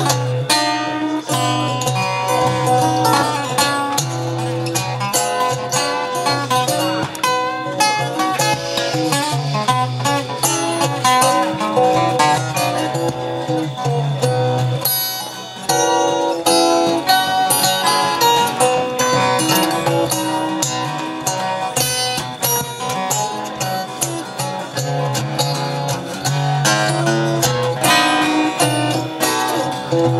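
Steel-string acoustic guitar fingerpicked: a run of plucked melody notes over a steady bass note, with a brief dip in loudness about halfway through.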